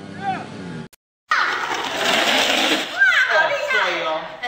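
Voices calling out over a loud rushing noise, after a brief drop to silence about a second in.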